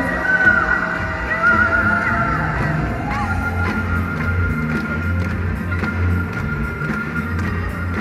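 Live concert music from a band: a steady bass pulse under held high tones, with a high wavering voice over the first three seconds or so.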